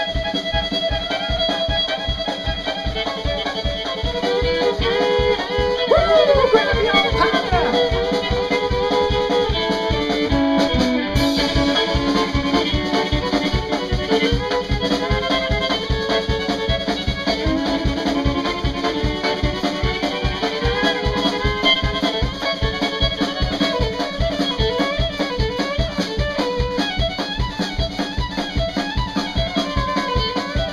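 Live band instrumental: a fiddle playing a bowed melody over a drum kit's quick, steady beat, with a sliding fiddle phrase about six seconds in.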